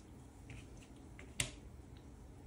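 A game piece being set down on the board: one sharp click about one and a half seconds in, after a couple of fainter ticks.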